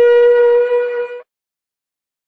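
Shofar blast: one long held note with a bright, buzzy edge that cuts off abruptly a little over a second in.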